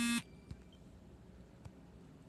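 A brief buzzing tone at the very start, then quiet room noise with a couple of faint clicks.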